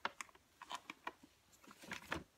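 Scattered light clicks and taps, irregular and faint, as a small dog is picked up and lifted into someone's arms, with a stronger tap near the end.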